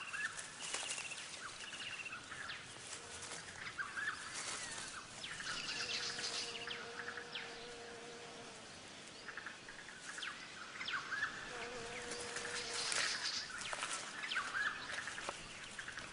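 Bird chirps and trills in the bush, over intermittent rustling and scuffling in dry leaf litter as two jacky dragons fight.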